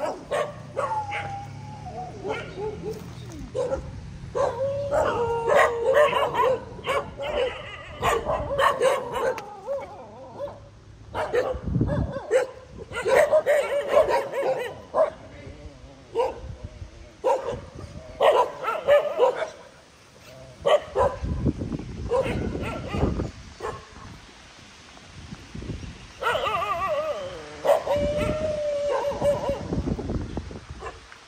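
Several free-roaming dogs barking and yelping in repeated bouts, with short lulls between. This is typical of a pack barking at a stranger it is following.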